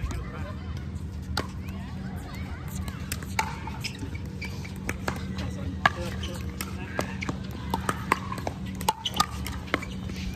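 Scattered sharp pops of pickleball paddles hitting the plastic ball, irregular, roughly one a second, over a steady low hum.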